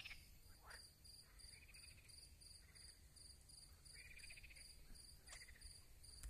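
Faint crickets chirping in an even rhythm of about three chirps a second, with two brief higher calls from another animal partway through.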